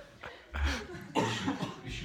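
A cough about half a second in, among chuckling and laughter from an audience in a room.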